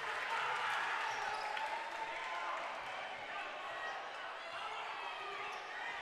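Gymnasium game ambience: a steady crowd murmur with a basketball being dribbled on the hardwood court.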